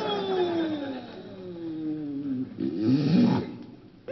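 Exaggerated comic snore performed by an actor for radio: a long whistling tone that slides slowly downward, then a short loud snore about three seconds in that fades away.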